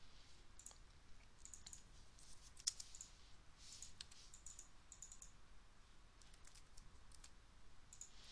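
Faint computer keyboard typing and mouse clicks, in short irregular clusters.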